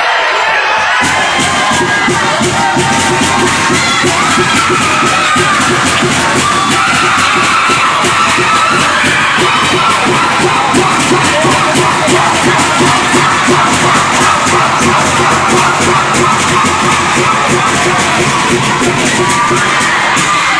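Crowd of futsal spectators cheering and chanting continuously over a steady rhythmic beat.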